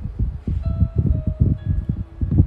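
Soft chime-like ringing, a few thin held tones from about half a second in, over a low, uneven rumble.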